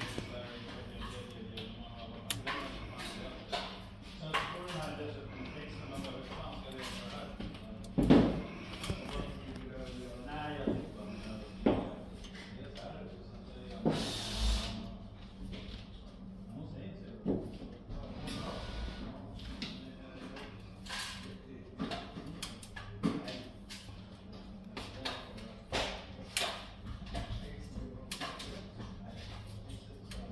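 Small clicks and knocks of a plastic RJ45 keystone jack and a thin hand tool as wires are pressed into the jack's contacts, the loudest knock about eight seconds in. Indistinct voices go on underneath.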